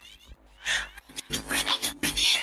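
Isolated, filtered singing voice from an a cappella track. After a quiet start, a short sung phrase comes in about half a second in, and another follows in the second half.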